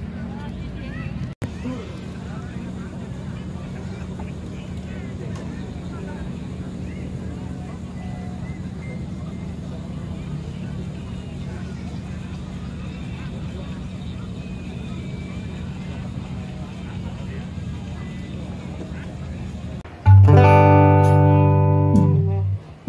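Steady background hum and general noise with faint distant chatter. About two seconds before the end, a loud sustained instrument note with many overtones comes in through the stage sound system.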